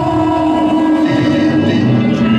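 Music played from a DJ's Technics turntables and mixer during a battle routine: long held horn-like tones over a low bass note, without a clear beat.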